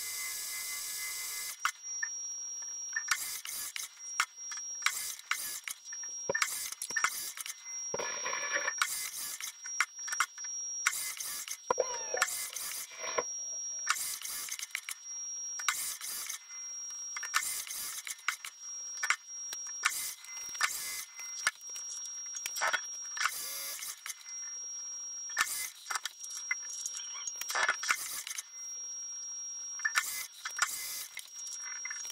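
Precision Matthews 1440TL metal lathe running during thread-cutting passes with a brazed carbide tool bit, a thin steady high whine underneath. Brief sharp noises come roughly once a second, unevenly spaced.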